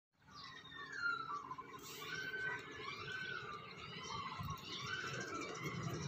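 Faint outdoor ambience: birds chirping and whistling in short gliding calls over a low rumble of wind on the microphone.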